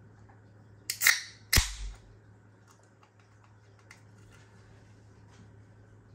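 A 330 ml aluminium ring-pull can of lager being opened: two clicks as the tab is lifted, then a sharp crack and a brief hiss of escaping gas about a second and a half in.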